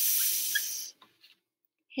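Dry-erase marker hissing across a whiteboard for about a second as a letter is written, followed by a few faint taps.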